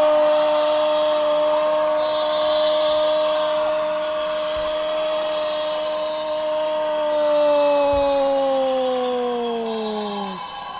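A sports commentator's drawn-out 'goooool' shout: one man's voice holding a single loud note through the whole stretch, sagging in pitch and trailing off near the end.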